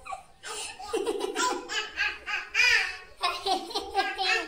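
A toddler laughing in a run of short bursts.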